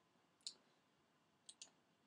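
Three faint computer mouse clicks in near silence: a single click about half a second in, then a quick double click about a second and a half in.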